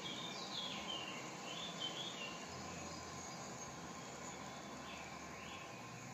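Faint outdoor ambience: a steady insect hiss, with a few short bird chirps rising and falling in pitch in the first two seconds and again near the end.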